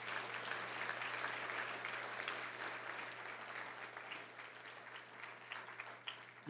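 Audience applauding, loudest at first and dying away gradually.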